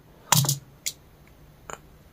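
Small clicks and taps of fishing tackle being handled on a desk mat: a feeder cage, hook leader and line. There is one louder short burst about a third of a second in, followed by a few fainter separate clicks.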